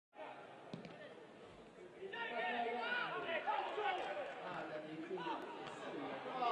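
A voice talking over a faint crowd background, with a soft knock about a second in; the talking starts about two seconds in.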